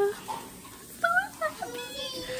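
A few short, high-pitched vocal sounds that rise and fall in pitch, starting about a second in.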